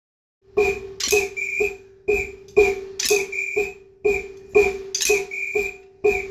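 A group of drummers striking their drumsticks together in unison, sharp clicks with a short ringing tone. They play a repeating figure: three quick clicks followed by two slower ones, at a steady beat of about two a second.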